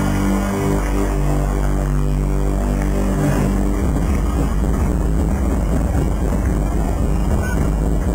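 Loud electronic concert music from the arena sound system, heavily distorted by the camcorder's microphone: held synth chords over a deep drone, turning denser and busier about four seconds in.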